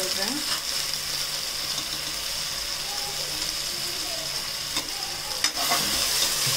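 Sliced onions, green chillies and ginger-garlic paste sizzling in hot oil in an aluminium pressure cooker as they are stirred with a slotted spoon. A steady frying hiss, with a couple of sharp knocks of the spoon against the pot near the end.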